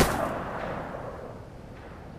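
Handgun shot dying away: the report's echo fades out over about a second and a half.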